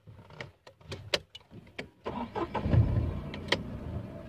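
A few sharp clicks, then about two seconds in the Tata Tigor's engine comes up loudly and carries on running.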